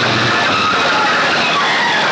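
Very loud music from a DJ sound-box system, so overdriven on the phone's microphone that it comes through as a steady, harsh, distorted roar.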